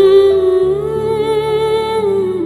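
A woman's voice holding one long, slightly wavering note, close to a hum, at the end of a sung line of a slow Hindi love song, over soft sustained instrumental backing whose low notes shift under it partway through.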